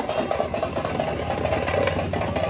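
Motor vehicle engines idling in a busy street, a steady low hum.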